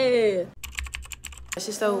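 A woman's loud, drawn-out exclamation falling in pitch. It is cut off about half a second in by about a second of rapid clicking with a low rumble beneath it, before talking starts again near the end.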